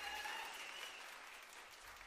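Faint, even background noise fading out toward silence, with a thin held tone dying away within the first second.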